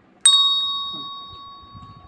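A single bright bell-like ding, struck once about a quarter second in and ringing out as it fades over about two seconds.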